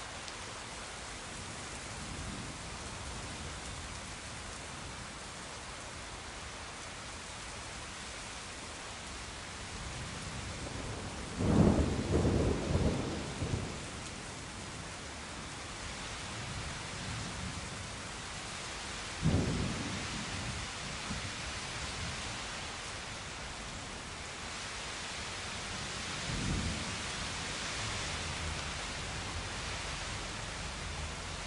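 Steady rain with thunder. A loud peal of several cracks comes about eleven seconds in and lasts two seconds, a single sharper crack follows around nineteen seconds, and a fainter rumble comes near the end.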